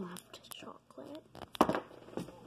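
Small plastic spoon scraping and digging into a tub of ice cream, with one sharp clack about one and a half seconds in, and a soft whisper.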